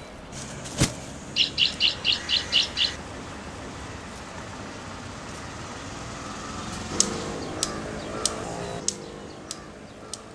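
A bird gives a quick run of seven high chirps, about five a second, after a sharp click at the start, over a steady street background. In the second half a regular ticking, about one tick every 0.6 s, comes in with a soft low tone under it.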